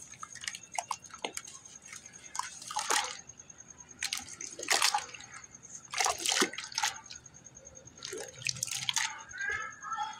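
Hands squeezing and kneading a watery slurry of geru (red ochre) and sand in a plastic bucket: irregular squelches, sloshes and drips, with the biggest splashes about 3, 5, 6 and 9 seconds in.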